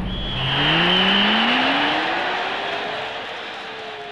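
Title-graphic sound effect: a pitched sweep rises steadily for about three seconds, levels off and dips slightly near the end, over a fading wash of noise. A thin high tone runs through the first two seconds.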